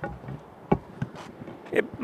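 A few light clicks and knocks, the fullest one near the end: a car's driver door being unlatched and swung open.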